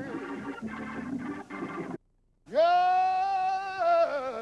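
A man singing solo into a microphone through the rally's sound system. There is a mix of tones at first, then the sound drops out for half a second about two seconds in, and he comes back on one long held note with vibrato that falls off near the end.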